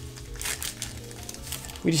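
Foil Yu-Gi-Oh! Gladiator's Assault booster pack crinkling as it is torn open, over steady background music.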